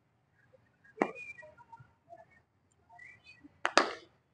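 Cricket bat striking a leather cricket ball near the end: a sharp crack with a second knock right beside it. A softer single knock about a second in.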